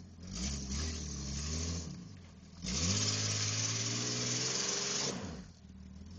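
Lifted SUV's engine revving hard as it works through deep mud: a first rev in the opening two seconds, then a louder one that climbs and holds for a couple of seconds, with a rushing noise over it, before dropping back.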